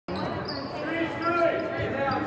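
Basketball dribbled on a hardwood gym floor during a game, with indistinct voices in a large gym.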